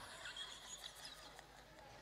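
Faint, brief laughter from a woman held away from the microphone, over low room noise.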